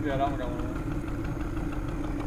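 Boat motor idling steadily, a low even hum with one held tone. A short voice sound comes just after the start.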